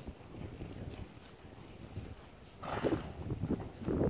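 Hoofbeats of a saddled horse moving through deep arena sand: soft, dull thuds, with a short louder rushing sound a little under three seconds in.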